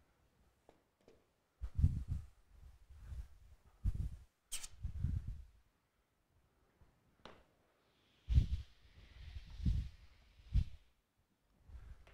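Chalkboard being wet-erased by hand: dull bumps and rubbing as the board is wiped, with a sharp, very short hiss about four and a half seconds in and a softer hiss of wet wiping in the later part.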